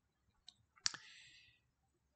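Faint mouth clicks in a pause of speech: a soft click, then a sharper lip smack just under a second in, followed by a short intake of breath.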